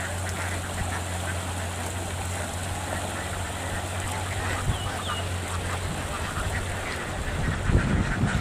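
A large flock of free-range ducks quacking and chattering without a break as they feed in a flooded field, over a steady low hum.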